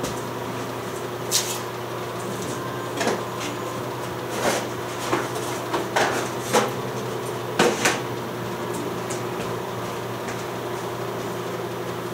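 A steady low electrical hum, with about seven short clinks and knocks from darkroom equipment being handled, spread over the first eight seconds.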